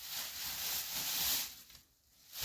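Fabric rustling as a quilted comforter is pulled out and handled, a continuous swishing noise for about a second and a half that then dies away.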